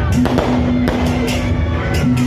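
Loud procession music with a long held note over a drum beat. Firecrackers pop irregularly through it, several a second.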